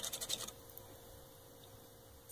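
A plastic measuring spoon stirring and scraping against the bottom of a stainless steel pot of broth, making a quick run of scratchy clicks that stops about half a second in, then a faint steady hum.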